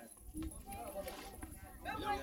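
Several people talking in the background, their voices faint and overlapping, over a low irregular rumble.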